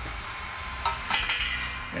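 Steady hiss and low rumble of a pressure washer spraying pavement, with a couple of light metal clinks about a second in.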